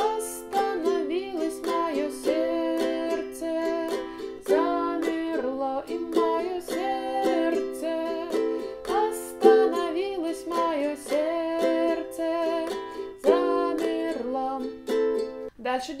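Ukulele strummed in a down-down-up-up-down-up pattern through the chords C, F, G and A minor, with a woman singing the melody of the chorus over it. The playing stops just before the end.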